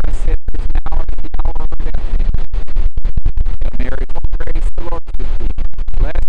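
A man's talking voice swamped by heavy wind buffeting on the microphone: a loud low rumble that keeps cutting the sound out in short dropouts.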